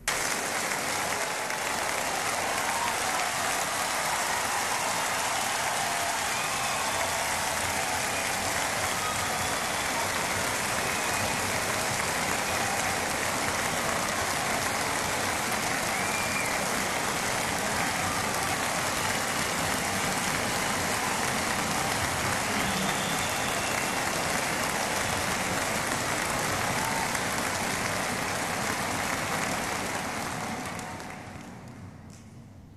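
Large concert-hall audience applauding and cheering in a steady ovation, with a few whistles.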